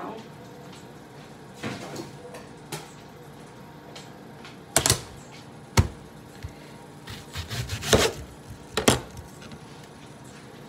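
Scattered knife knocks and taps as an onion is handled and cut on a countertop, a few single sharp strikes with a quick cluster of them near the end.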